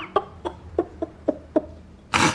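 A man chuckling: a string of about seven short laughs, roughly three a second, fading slightly toward the end.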